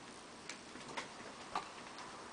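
Three light, sharp clicks about half a second apart, the last the loudest, from thin plastic mixing cups and a stirring stick being handled during the mixing of two-part silicone mold rubber.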